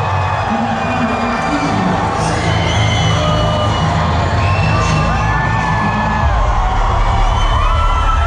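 Loud live concert music with a heavy, pulsing bass, heard from inside a cheering crowd with shouts and whoops over it. The bass drops deeper about six seconds in.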